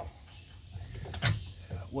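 A single short knock about a second in, from the trailer hitch's ball mount being handled in its receiver.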